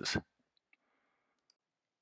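The last syllable of a synthesized narrator's voice, then near silence broken by a few faint clicks.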